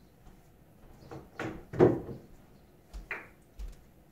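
A few separate dull knocks and thumps, the loudest a little under two seconds in, followed by two low thuds about half a second apart that fit footsteps as the player walks round the pool table.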